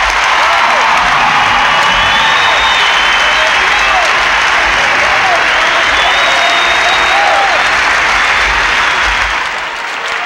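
A large arena crowd applauding and cheering, swelling in the first second and then holding steady, with scattered shouts and whistles above the clapping; it eases a little near the end.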